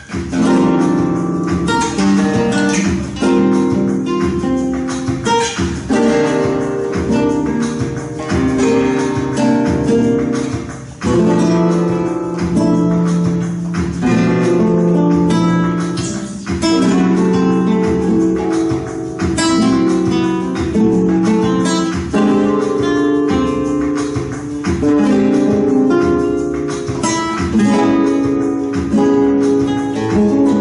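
Two double-soundhole flamenco guitars playing together in a tangos, strummed chords mixed with picked lines, with a short break in the playing about eleven seconds in.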